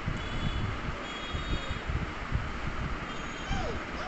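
Steady rumbling background noise with faint, high, thin beeping tones that come and go.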